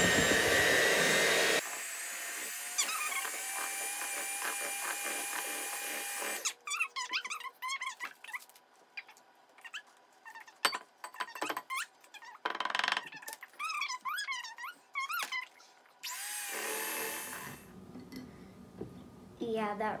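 Electric hand mixer running on its lowest speed in cake batter: loud and spinning up at first, then dropping off to a quieter whirr that stops about six seconds in. After that come scattered squeaks and scrapes as a spatula works batter off the beaters and around the glass bowl.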